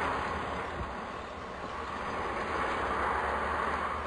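Steady rushing outdoor background noise with a low rumble underneath, with no speech in it.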